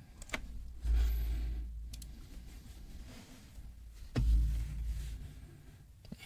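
A quiet room with a few faint clicks and two soft, low thumps, about a second in and about four seconds in.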